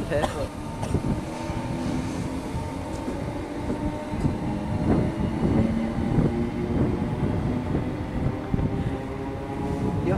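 Northern electric multiple unit moving through the station, its traction motors giving a steady whine made of several held tones over the rumble of wheels on rail.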